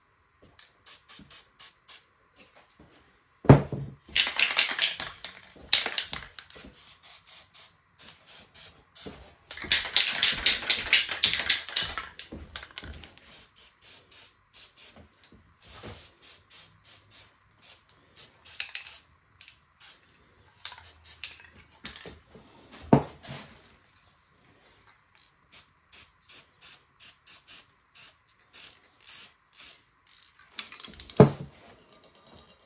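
Aerosol spray-paint can hissing in two longer bursts, about four seconds in and again around ten seconds, amid runs of quick clicking typical of a spray can's mixing ball rattling as it is shaken. Two sharp knocks, one just before the first spray and one about two-thirds of the way through.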